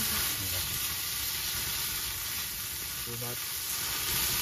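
Food sizzling in a small pan on a grill grate over an open campfire, a steady frying hiss while flames flare up from the pan.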